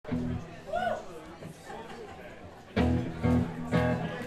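Faint talking at first, then a live band's amplified instruments sound three loud, sustained low chords about half a second apart, starting near the three-second mark.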